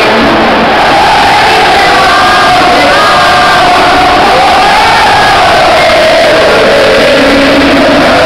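A huge football stadium crowd cheering and singing together, very loud and unbroken, with individual shouts and whoops rising above the roar.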